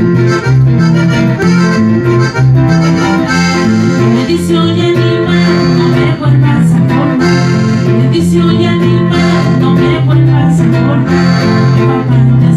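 Instrumental passage of a norteño song: accordion melody over bajo sexto and electric bass, playing steadily with a bouncing bass rhythm.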